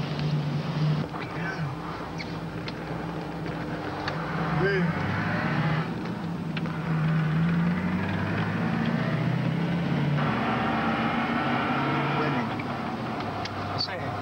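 Range Rover engine running while the vehicle drives, heard from inside the cabin, its pitch shifting up and down with changes in engine speed.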